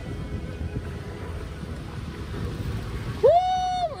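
Steady low noise of wind and sea around an open boat, then a loud, drawn-out "Woo!" cheer near the end.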